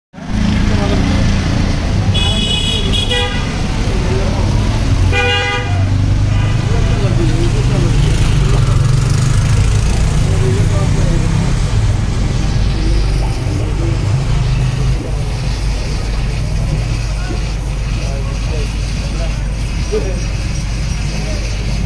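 Steady low rumble with indistinct voices in the background, and two horn toots, about two and five seconds in.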